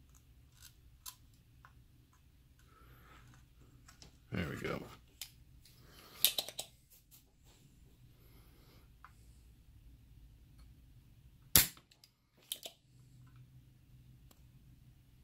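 Spring-loaded desoldering pump (solder sucker) being handled and cocked, with clicks, then fired at a soldering-iron-heated capacitor joint with one sharp, loud snap after about eleven and a half seconds, followed by a smaller click.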